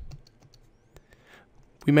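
A few faint, scattered clicks of a stylus tapping on a tablet screen.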